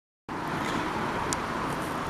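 Steady outdoor background noise of road traffic, starting abruptly as the recording begins.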